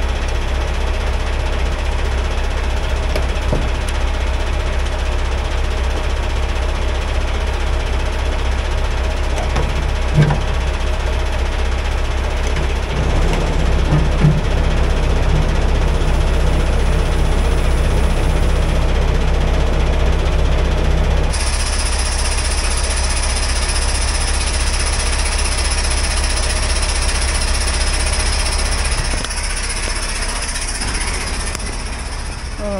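Semi tractor's Paccar MX-13 diesel idling steadily, with a few short metallic knocks. A steady hiss comes in about two-thirds of the way through.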